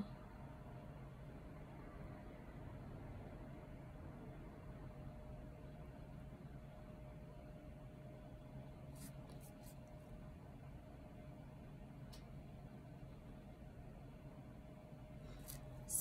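Very quiet room tone: a faint steady hum with a few soft, faint clicks around the middle. The acrylic brush work on the nail is not clearly heard.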